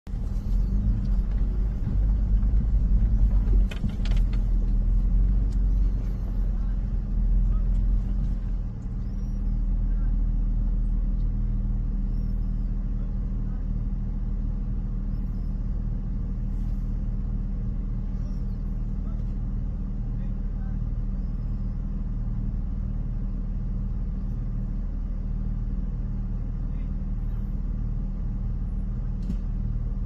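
A vehicle engine running at low revs, heard from inside the cab as a steady low rumble. It is heavier and uneven for the first nine seconds or so, with a short knock about four seconds in, then settles into an even idle.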